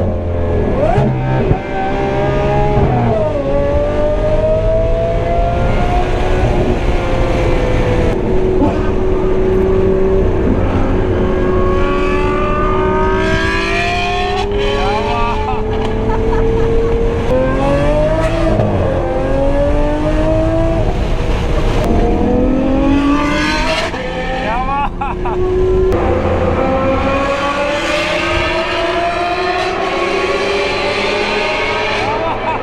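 Lamborghini Aventador SV's naturally aspirated V12 through its aftermarket Brilliant exhaust, heard from the open cockpit, pulling hard through the gears: the pitch climbs, drops sharply at each shift and climbs again, several times over.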